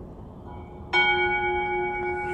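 A consecration bell struck once about a second in, ringing on with several steady tones. It marks the elevation of the chalice at the consecration.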